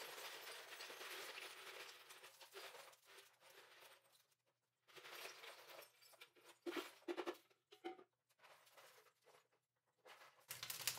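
Ice cubes being tipped from a plastic pitcher onto a plastic pitcher lid: a faint rattling run for the first two seconds or so, then a few scattered clicks and knocks as the cubes settle and the pitcher is handled.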